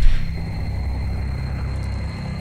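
A low, steady rumble from the episode's soundtrack, with a faint thin high tone held above it.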